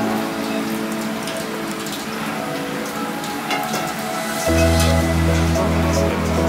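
Background music with a soft, rain-like crackling patter over it, from a gloved hand working soaked breadcrumbs into raw ground meat in a steel bowl; a deeper bass line comes into the music about four and a half seconds in.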